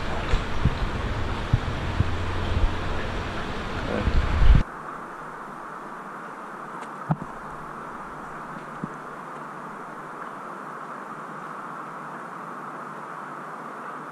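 Water sloshing and splashing as a person wades in a shallow fish pool handling a landing net, over a loud, low rumble. About four and a half seconds in this cuts off suddenly to a steady hiss, with one sharp click a little later.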